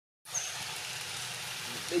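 Steady outdoor background hiss with one brief high, thin chirp near the start; a high-pitched voice starts right at the end.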